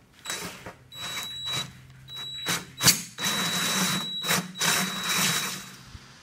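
A drill spinning a hole saw into eighth-inch galvanized steel sheet, the teeth grinding on the metal over a steady high motor whine. It runs in about five short bursts with brief pauses between, and there is a sharp click near the middle.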